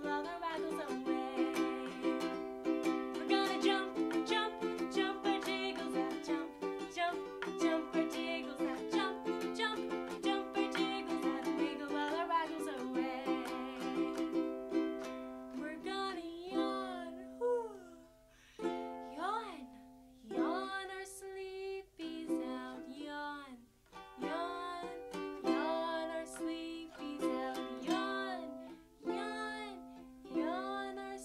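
A woman singing a children's song while strumming a ukulele. For roughly the first half the strumming is brisk and even; after that it slows and breaks into short pauses between sung phrases.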